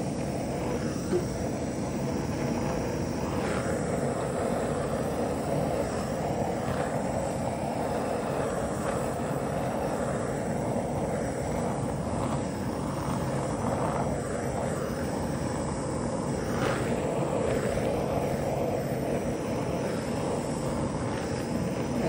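A handheld heating tool held over wet epoxy resin, running with a steady, unbroken rushing noise; the heat pops surface bubbles and makes the white cell paste lace up into cells.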